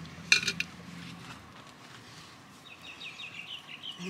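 Terracotta flowerpot knocked and clinking sharply a few times as it is handled to tip out its soil, followed by soft rustling. Small birds chirp faintly in the background near the end.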